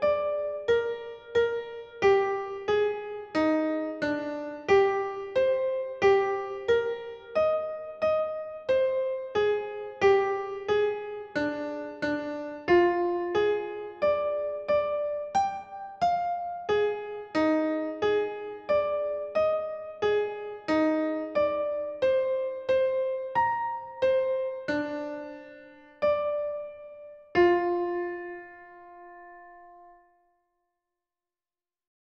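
Slow solo keyboard music with a piano-like sound: a melody of single struck notes and chords, one to two a second, that slows toward the end and finishes on a held chord, which is then cut off.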